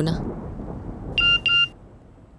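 Mobile phone alert tone: two identical short electronic beeps in quick succession, over a low rumble that stops with them.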